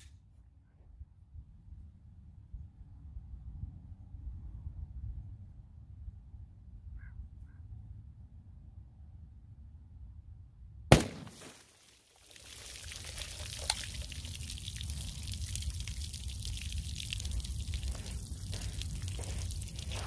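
A single gunshot from a short-barrelled Zastava ZPAP85 5.56 pistol firing M193 55-grain ball, a little after the middle, into water-filled plastic gallon jugs. After it comes a steady sound of water pouring and trickling out of the shot jugs.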